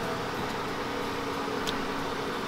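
Steady hum of honey bees flying around an opened frame of capped honey, with a short tick of the uncapping tool on the comb near the end.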